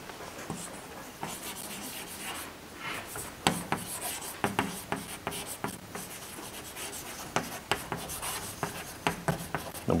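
Chalk writing on a chalkboard: a run of irregular taps and short scratching strokes as a word is written out.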